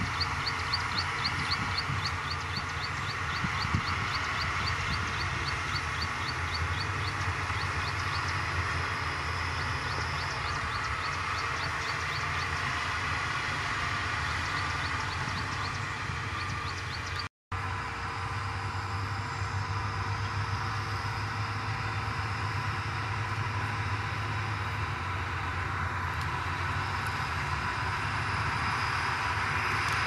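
Diesel engines of Shantui DH17C2 crawler bulldozers running under load as they push dirt, a steady heavy rumble. A fast, high ticking, about three or four a second, runs through roughly the first half, and the sound drops out for a moment at a cut about 17 seconds in.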